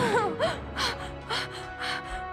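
A woman's quick, frightened gasping breaths with short whimpering sounds, about five in a row, over background music with sustained notes.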